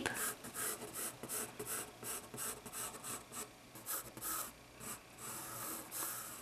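Graphite pencil sketching lightly on thick mixed-media paper, drawing a curved outline in a run of short scratchy strokes, about three or four a second.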